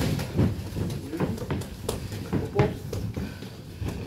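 Boxing gloves landing punches and boxers' shoes shuffling on the ring canvas during a sparring exchange: a string of short, sharp thuds at irregular intervals.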